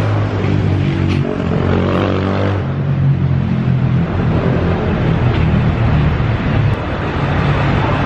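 City street traffic with a nearby motor vehicle engine running steadily and loudly.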